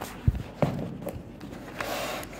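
A paperback workbook being handled on a table and opened: two sharp thumps about a quarter and half a second in, then smaller knocks and a rustle of pages being turned near the end.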